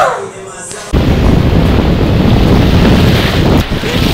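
Wind buffeting the microphone over breaking ocean surf. It starts abruptly about a second in and stays loud and rumbling.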